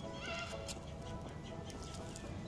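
Background music, with one short rising-and-falling call from a yellow-naped amazon parrot about a quarter of a second in.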